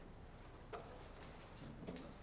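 Quiet room tone with two faint light clicks, one about a second in and one near the end, as a ceramic coffee mug is picked up off a wooden lectern.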